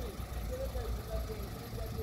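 Faint distant voices over a steady low rumble.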